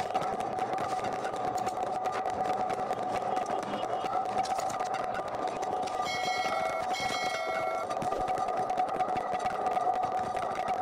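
A steady, buzzing drone without pauses, with two short bell-like chimes about six and seven seconds in.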